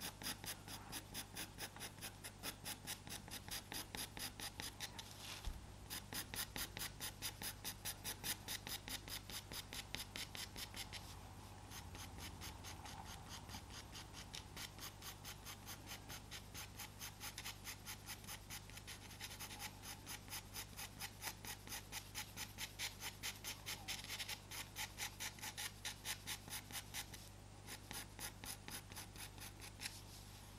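Pastel pencil stroking lightly over Pastelmat paper in quick, evenly repeated short strokes, with a couple of brief pauses.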